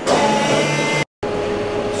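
Friction stir welding machine running with a steady whirring hum and hiss. It drops out briefly about a second in, and a lower steady hum carries on after.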